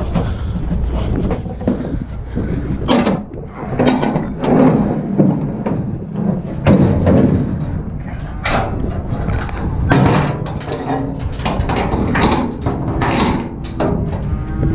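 Cattle trailer being loaded: irregular metal bangs and knocks against the trailer, several every few seconds, over a low rumble.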